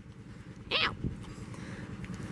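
A woman's short yelp of "ow" about a second in, as a young horse nips her hand, over a faint low background rumble.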